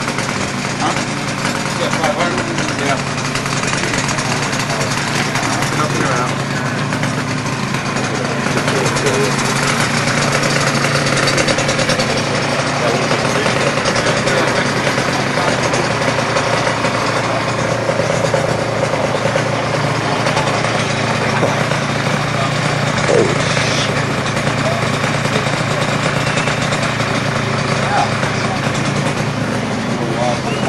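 An engine idling steadily throughout, with a crowd's voices chattering in the background.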